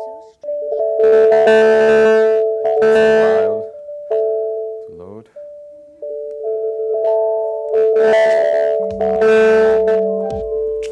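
Electronic music playing from a computer: sustained synthesized tones with two loud clusters of bright, chime-like notes, and a quick repeating pitch sweep about halfway through.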